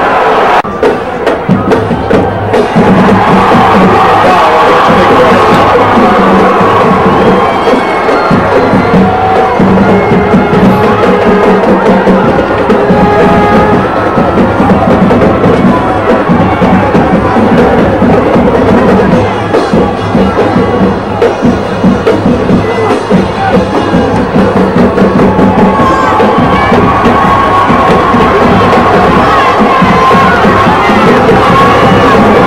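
Music, likely from a band in the stands, playing over a stadium crowd that cheers and chatters. The sound is dense and continuous, with held notes throughout.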